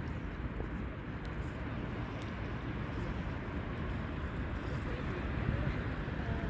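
Steady low rumble of outdoor background noise with faint voices in the distance.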